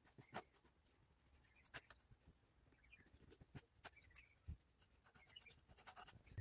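Faint, scratchy strokes of a flat paintbrush's bristles brushing paint onto a plastic ice cream tub, repeated many times.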